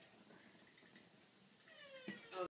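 Near silence: room tone, with a faint high-pitched call beginning near the end.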